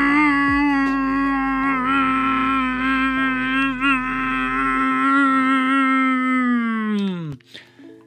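A man humming one long, steady note, wavering slightly midway, then sagging in pitch and breaking off shortly before the end.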